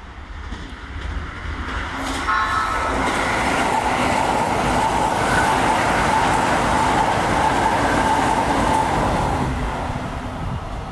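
Keisei 3000-series electric train sounding a short horn blast about two seconds in, then passing through the station at speed. The wheels and motors rush past with a steady tone and fade slightly near the end.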